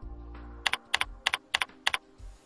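Computer keyboard keys clicking as a name is typed in, about five quick pairs of clicks over soft background music.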